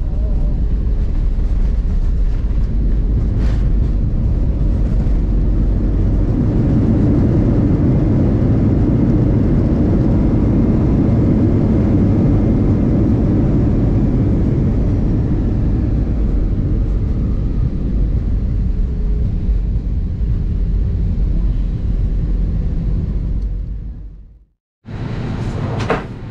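Jet airliner cabin noise during the landing rollout: a steady, loud, low rumble of engines and wheels on the runway. It eases slightly in the second half as the plane slows and turns off onto a taxiway.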